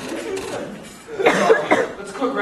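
A person coughing: a short run of about three coughs starting a little past halfway.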